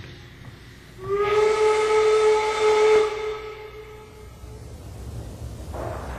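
A steam whistle blows once, starting about a second in: a single steady pitched blast with a hiss of steam, sliding up slightly as it starts and then fading away over a few seconds.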